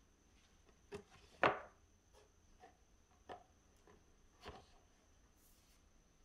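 Light taps and knocks of plastic model-kit wall panels being handled and butted together on a paper-covered work surface: about seven small knocks, the loudest about a second and a half in, then a brief rustle near the end.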